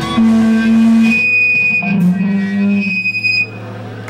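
Electric guitars through amplifiers letting long held notes ring out, with a high steady whine over them. The sound drops away about three and a half seconds in, leaving a low steady amp hum.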